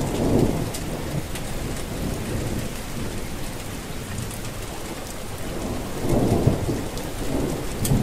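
Steady rain falling, with low rumbles of thunder; the strongest rumble swells about six seconds in.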